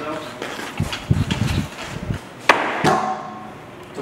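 Pro scooter rolling on a concrete floor with a low rumble, then a sharp clack about two and a half seconds in and a smaller knock just after, as the scooter hits the floor during a trick.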